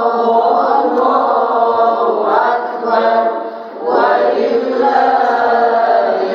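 Several women's and girls' voices reciting the Qur'an together in unison, a melodic chanted recitation (tilawah). The voices break briefly for breath about four seconds in, then carry on.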